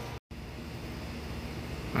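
Steady low background hum and hiss, broken by a short dead-silent gap near the start.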